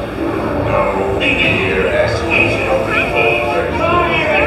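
Dark-ride soundtrack: indistinct, overlapping voices mixed with music over a steady low rumble.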